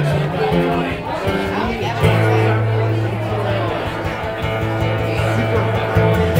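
Live acoustic-guitar music, with long held low notes through the second half, and voices in the room alongside.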